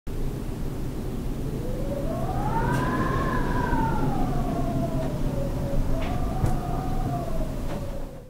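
Wind on the microphone, with a whistling moan that rises in pitch to a peak about three seconds in and then slowly falls away, and a fainter whistle near the end.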